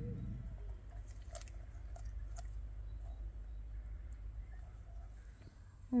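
A few short, sharp snips of scissors cutting a silicone intercooler hose, about one to two and a half seconds in, over a low steady hum.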